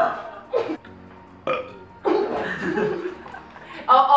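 Stifled laughter through a mouthful of water: two short snorts about half a second and a second and a half in, then a longer muffled, burp-like stretch as the laugh breaks through.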